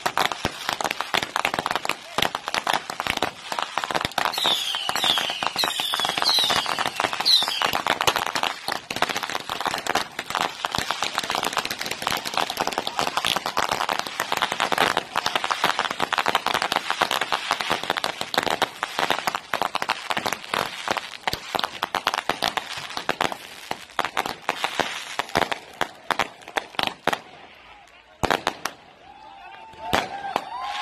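Fireworks going off in a dense barrage: rapid crackling and popping of bursting aerial shells and firecrackers, with a few whistling glides about four to eight seconds in. The barrage thins out near the end.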